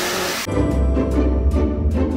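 A long breathy hiss of smoke being blown out, as a cartoon sound effect. About half a second in, theme music with a heavy bass and a steady beat takes over.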